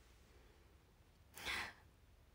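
A young woman's single short breath out, a sigh-like exhale about one and a half seconds in, otherwise near-quiet room.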